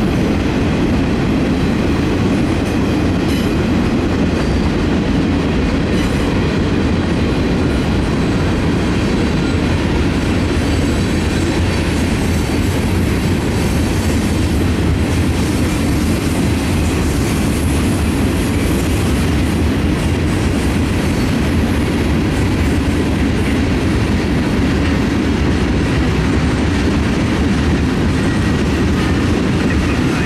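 Freight cars rolling past close by: a steady rumble and clatter of steel wheels on the rails, unbroken as tank cars, a covered hopper and boxcars go by.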